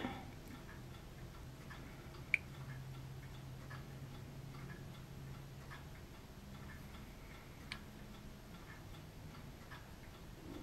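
Faint ticking in a quiet room over a low hum, with a sharper tick a little over two seconds in.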